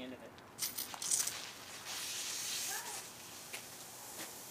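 Rain Bird rotor sprinkler head turned on and spraying water: a steady hiss comes in about half a second in, with a few sharp clicks and spatters during the first second.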